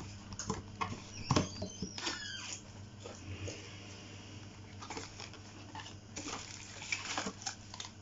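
Packaging being handled and opened: scattered small clicks, taps and crinkles of plastic wrap and cardboard around a boxed solar lantern.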